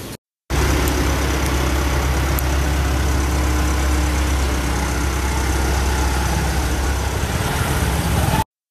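Car engine idling steadily, close by, with a low, even hum; it cuts in abruptly just after the start.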